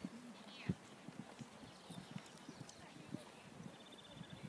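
Faint, irregular thuds of a horse's hooves cantering on a sand arena surface.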